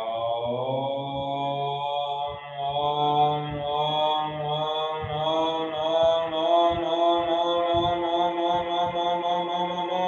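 A man chanting a mantra in one long held tone with a low, steady pitch. It dips briefly about two and a half seconds in, then carries on.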